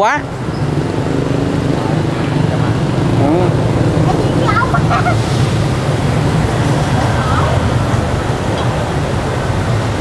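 Steady roar of gas burners under large bánh xèo pans as crepes fry in them, with faint voices in the background.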